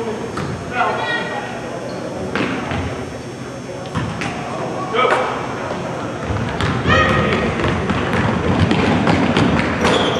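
Live youth basketball in a gym: a basketball thumping on the hardwood floor and shouts from players and spectators. The voices thicken into crowd noise over the last few seconds as a shot goes up.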